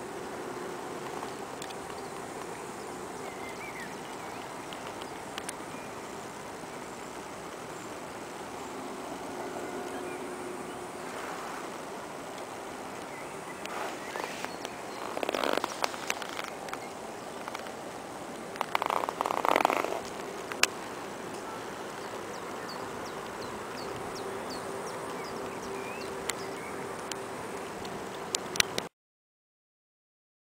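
Outdoor ambience with a faint steady hum, broken by two short louder bursts of noise about halfway through.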